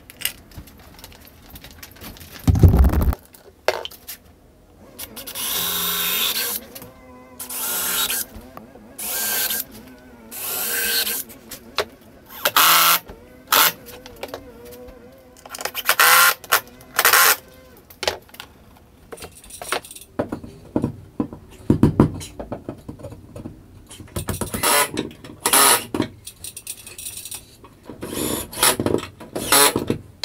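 Cordless drill-driver running in repeated short bursts to drive screws, its motor whining briefly each time. Between the bursts come knocks and handling clatter, with a heavy thud about three seconds in.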